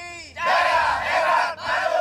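A group of men shouting a slogan together in a call-and-response chant: a short call from one voice, then two loud shouts in unison from the whole group.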